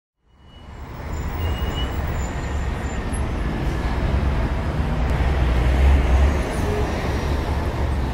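A steady, loud rumbling noise, heaviest in the low end with a hiss above, fading in over about the first second.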